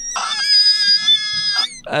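A high-pitched, voice-like squeal held steady for about a second and a half, then cutting off.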